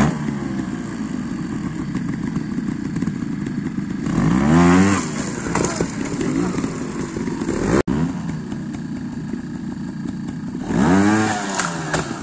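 Trials motorcycle engine running steadily at low revs, blipped up sharply twice, about four seconds in and again near the end.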